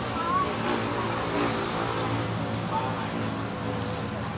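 Steady outdoor background noise: faint voices talking over a constant low hum.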